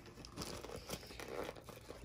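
Cardboard vanilla wafer box and the plastic wrapper inside it being handled as the flaps are folded, with faint, irregular crinkling and rustling.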